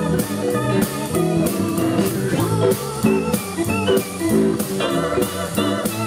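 Live blues band playing an instrumental break: a Korg keyboard with an organ sound takes the lead over electric guitar, bass and drums keeping a steady beat.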